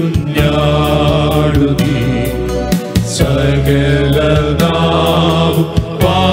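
A male choir of six singing a Christian song together through microphones, over an amplified instrumental backing with bass and a steady beat.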